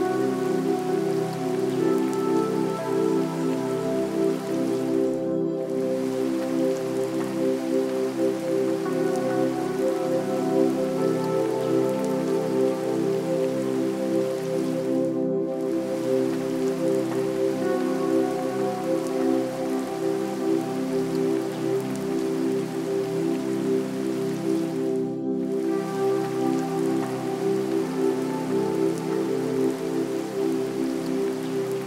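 Steady recorded rain sound mixed with soft, slow ambient music of long held notes. The rain briefly drops out three times, about ten seconds apart.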